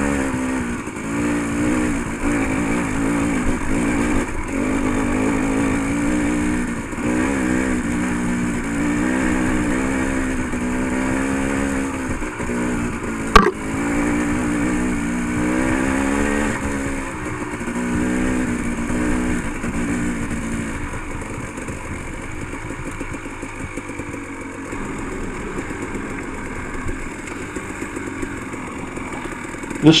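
Dirt bike engine running under load, its pitch rising and falling with the throttle, with one sharp knock about thirteen seconds in. From about two-thirds of the way through, the engine is quieter and lower at low speed.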